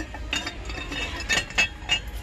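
Ceramic teapot lid clinking against the pot as it is handled and set back in place: a few light clinks, the loudest about one and a half seconds in.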